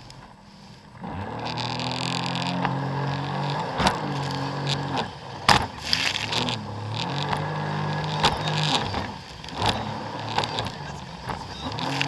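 Jet ski engine revving up about a second in, holding steady, then easing off and picking up again twice as the throttle changes. There are a few sharp knocks in the middle as the craft bounces over the waves.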